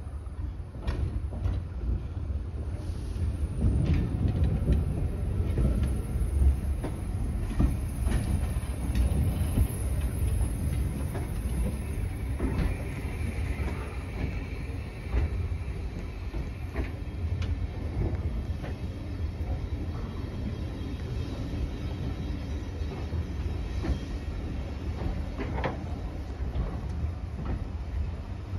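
Railway carriages rolling slowly past at close range: a continuous low rumble with scattered sharp clicks of wheels over rail joints, and a faint squeal of wheels about halfway through.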